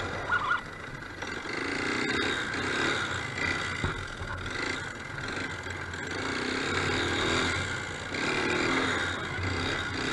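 Honda ATV engine running under way, the revs rising and falling every second or two with the throttle. A couple of sharp knocks sound just after the start.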